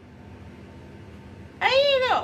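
Dog giving a single short whine near the end, its pitch rising and then falling.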